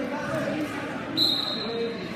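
A single steady, high-pitched whistle blast of just under a second, starting a little past halfway, over people talking in the background.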